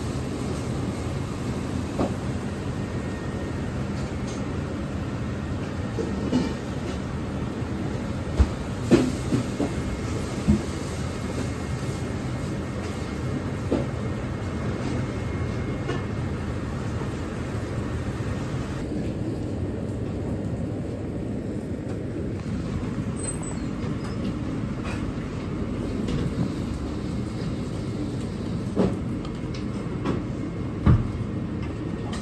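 Steady rumbling noise of a commercial Chinese gas range heating a wok of water under a bamboo steamer, with the steam running. A few short wooden knocks from the steamer being handled come in the first half.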